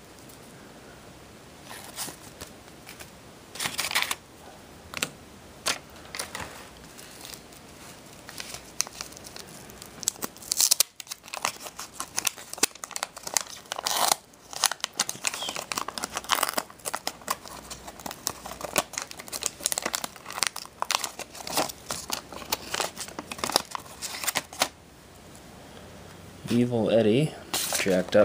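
Wax paper wrapper of a 1985 Topps Garbage Pail Kids pack crinkling and tearing as it is opened by hand. It makes a long run of quick crackles that grows busier about halfway through.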